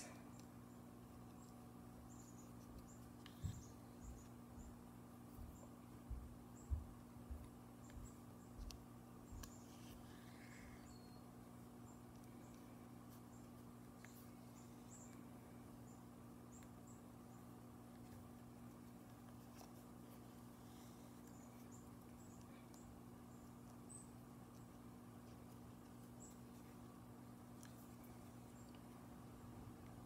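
Near silence over a steady low hum, with a few soft taps and rustles from hand-sewing a metal bolo clip onto a moose-hide backing, bunched in the first third.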